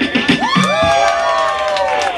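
A small group of onlookers cheering together with one long call that rises and then falls, starting about half a second in.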